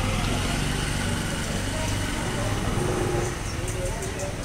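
Street background: a low, steady engine rumble, like a vehicle idling nearby, with faint indistinct voices over it.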